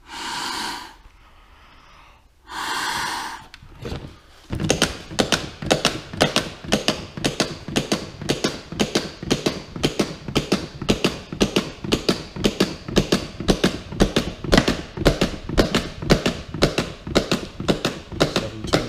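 Two rescue breaths blown into a CPR training manikin's mouth, each a rush of air about a second long, then chest compressions on the manikin at about two a second, each stroke a mechanical click from its chest.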